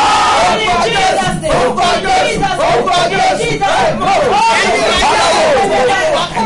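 Several voices praying and shouting aloud at once, loud and overlapping, in fervent group prayer.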